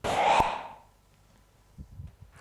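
A whoosh transition effect: a sudden rush of noise that fades away within about a second, with a short click near its middle.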